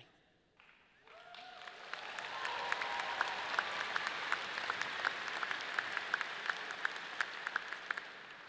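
Audience applauding: many hands clapping, building up about a second in, holding steady, then tapering off near the end.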